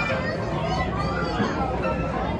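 Voices talking, with music faint beneath them.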